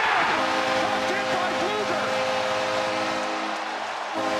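Arena goal horn sounding a steady, multi-tone chord over a cheering crowd, coming in about a third of a second in and thinning out near the end: the signal of a home-team goal.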